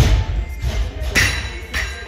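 Barbell loaded to 78 kg with bumper plates dropped from overhead onto the lifting platform. It lands with a heavy thud at the start, followed by a few smaller bounces and a clink of the plates, over background music.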